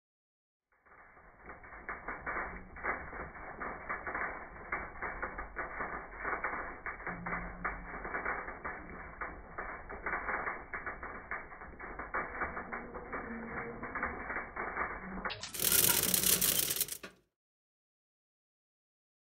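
Foam-disc seed metering units on a Simtech seed drill turning, with a dense, irregular clicking and rattling of the drive mechanism. Near the end a short, much louder sound takes over and then stops.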